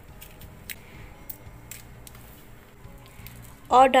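A few faint, short clicks of whole dried red chillies being dropped onto whole spices in a small ceramic bowl, over a low steady hum.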